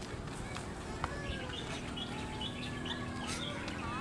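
Outdoor park ambience: short high chirps, bird-like, and faint distant voices over a steady low rumble.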